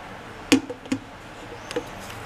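A few hard plastic knocks: the plastic jug tapping against the food processor's lid after the oil is poured in. One loud knock comes about half a second in, two lighter ones follow within the next half second, and a small one comes near the end.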